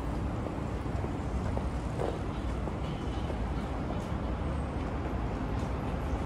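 City street ambience: a steady low rumble of road traffic.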